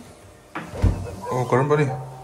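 A refrigerator door shutting: a light knock, then a dull thud about a second in.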